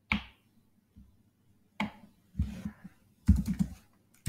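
Computer keyboard typing: a few spaced keystrokes, then quicker runs of keys in the second half.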